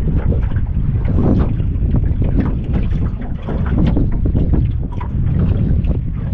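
Wind buffeting the microphone on an open boat: a loud, uneven low rumble throughout.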